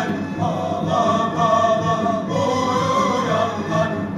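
Mevlevi sema music: a male chorus singing held melodic lines with instrumental accompaniment.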